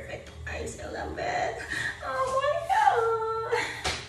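A woman's wordless vocalizing, drawn out and sliding up and down in pitch, the pleased sound of someone who has just tasted the food.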